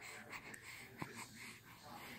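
Faint breathing of a baby close to the microphone, with a soft click about a second in.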